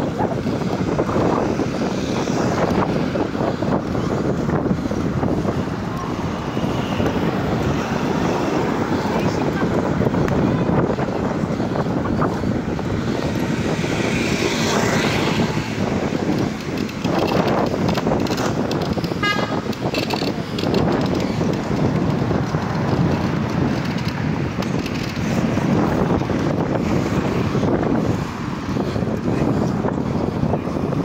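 Wind buffeting the microphone of a moving rider, a steady rushing noise, with street traffic and passers-by's voices underneath. A brief rapid ticking comes about two thirds of the way through.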